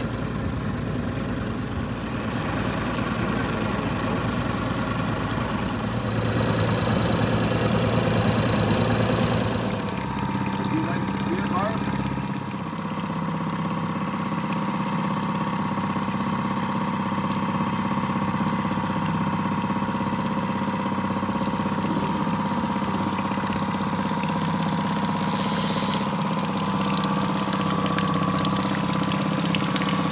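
Boat's Mercury outboard motor running steadily at trolling speed, with water wash. About ten seconds in, the deep rumble drops away and a steady pitched drone carries on, with a brief hiss near the end.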